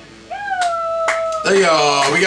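A single high-pitched call from a voice that glides up and then holds steady for about a second, followed about halfway through by loud voices speaking or shouting.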